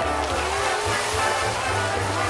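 Show music with a pulsing bass line playing for a flame-and-water fountain, over a steady rushing noise from the water jets and flames.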